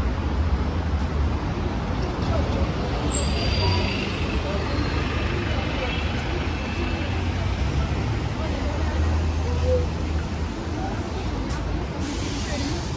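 Busy road traffic with a red double-decker bus's engine rumbling low close by, the rumble swelling twice. A brief hiss sounds about three seconds in.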